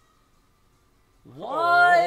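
Near silence for about a second, then an anime character's voice from the episode shouts a long drawn-out call of a name in Japanese. The call rises and then falls in pitch and is loud.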